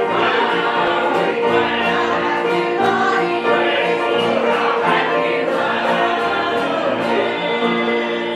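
Mixed church choir singing a hymn together, accompanied by banjo and guitar.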